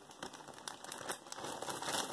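Costume jewelry being handled: faint, scattered small clicks and rustling.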